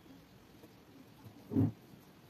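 A single short, dull thump about one and a half seconds in, over the faint scratching of a pen writing on notebook paper.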